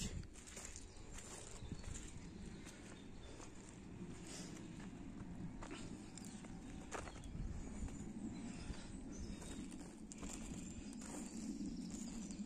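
Footsteps walking on a muddy dirt track, a few faint irregular steps over a steady low rumble.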